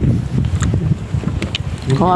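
Strong wind buffeting the phone's microphone, a low, uneven rumble that rises and falls with the gusts.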